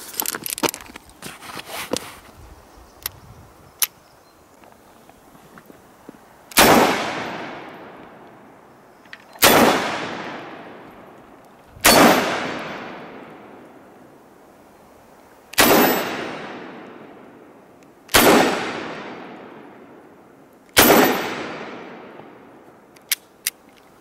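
Dan Wesson 715 .357 Magnum revolver firing six full-power 125-grain .357 Magnum rounds, one shot every two to three seconds, each report ringing off the range as it fades over a second or two. Before the first shot there are small metallic clicks as the cylinder is loaded and closed.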